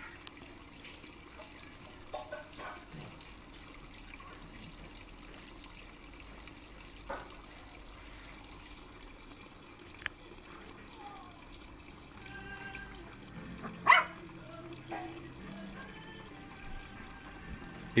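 Puppy giving a few short, scattered yaps at a cat; the loudest comes about fourteen seconds in, the rest are faint.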